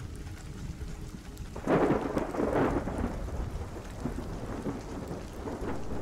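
Thunder rumbling over steady rain, swelling about two seconds in and slowly dying away.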